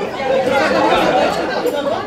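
Several people talking at once: overlapping voices and chatter from a gathered crowd, with no single speaker standing out.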